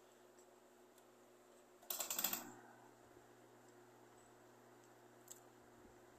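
A short burst of rapid clicking lasting about half a second, about two seconds in, over quiet room tone with a steady low hum.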